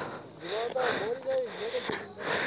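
Steady, high-pitched chirring of an insect chorus, with a faint distant voice talking underneath.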